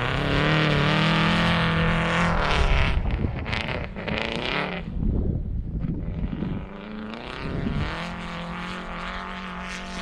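Rally car's engine running at high revs on snow, its note held steady at first, then wavering and breaking up through the middle as the revs rise and fall, before settling into a steady high-rev note again near the end.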